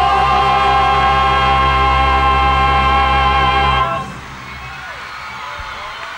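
A live band, orchestra and backing choir holding a song's final chord, with a singer's vibrato held on top, cut off sharply about four seconds in. A crowd cheering and applauding follows, quieter.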